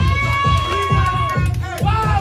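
Dance music with a heavy kick drum hitting steadily about twice a second, with a crowd's voices shouting and calling out over it.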